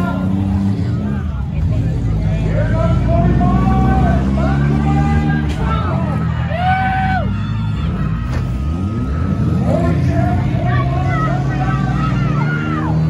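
Engines of several stock compact demolition-derby cars running in a dirt arena, a steady low hum, with spectators' voices shouting over them.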